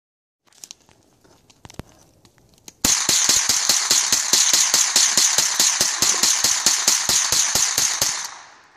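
A hand-held firework burning: a loud, steady hiss with rapid crackling pops, about seven a second, that starts about three seconds in and stops near the end. A few faint clicks come before it.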